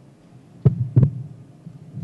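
Two dull thumps about a third of a second apart, a table microphone being handled or bumped, over a low steady hum.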